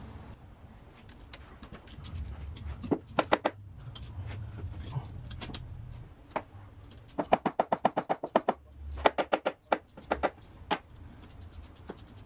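Ratcheting wrench clicking as the motor's mounting bolts are loosened: a few scattered clicks, then two quick, even runs of clicks in the second half as the handle is swung back and forth.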